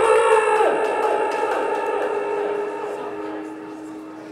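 A live band's amplified chord struck sharply and left to ring out, fading over a few seconds, with one note bending down in pitch under a second in.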